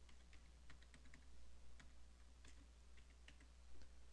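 Faint computer-keyboard typing: a scattered run of key clicks as a short name is typed in.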